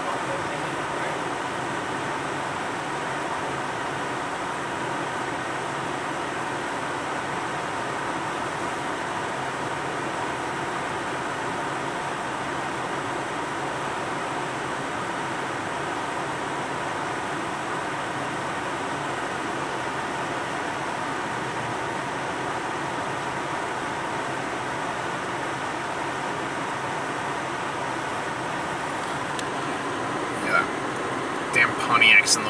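Steady, unchanging hum and rush inside a stopped car's cabin: the engine idling with the air-conditioning fan blowing.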